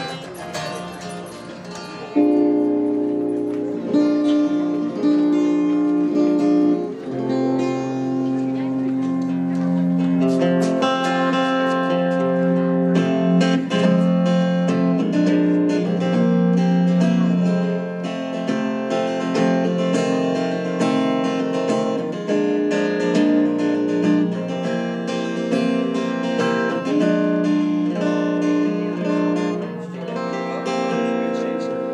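Music led by strummed acoustic guitar, with held notes underneath; it jumps louder about two seconds in and then runs on steadily.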